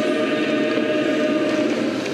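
Orthodox church choir holding one long, steady chord of several notes.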